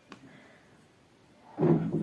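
Near silence, room tone, with one faint click just after the start; a voice begins near the end.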